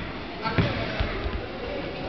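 Futsal ball thuds on a gym floor during play: a sharp hit about half a second in and another about a second in, echoing in a large indoor hall.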